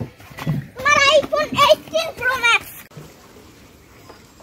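A person's high-pitched voice calling out in a few short phrases, which stops about three seconds in, leaving faint background noise.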